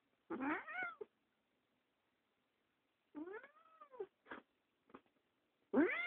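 Domestic cat meowing three times: a short rising meow just after the start, an arching one past the middle, and a longer, louder one starting near the end, with a few faint clicks between.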